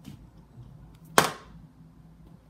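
A thrown dart striking the dartboard once, about a second in: a single sharp thunk with a brief ringing tail.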